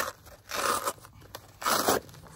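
Hook-and-loop (Velcro) closure on an HRT HRAC plate carrier being ripped open in three short rips, opening the carrier to take its armour plates.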